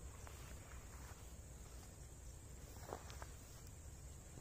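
Faint footsteps and rustling of leaves and twigs as a person pushes through dense brush, with a few small clicks of snapping or brushing twigs.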